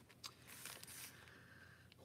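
Near silence, with a faint rustle of journal paper pages being handled, mostly in the first second.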